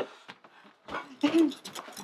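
A short, breathy whimpering cry that starts about a second in, after a moment of quiet.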